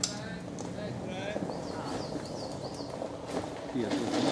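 Indistinct voices over a steady background, with short high chirping bird calls repeated in two quick runs during the first half.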